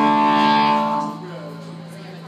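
Electric guitar chord ringing through the amplifier, held steady and then cut off about a second in, leaving a low steady tone and faint room noise.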